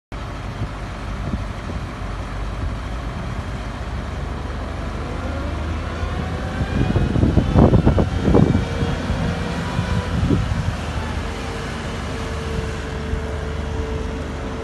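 Caterpillar 906H compact wheel loader's diesel engine running as the machine drives and turns, with a steady low rumble. Two louder bursts come around the middle, and a steady whine sets in during the second half.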